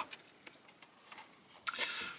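Faint scattered clicks and handling noise from a plastic brick-built model car being turned over in the hands. A short, sharper noise comes near the end.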